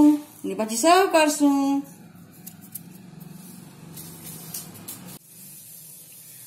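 A woman speaks briefly, then a faint steady hiss with a low hum remains until it cuts off suddenly near the end.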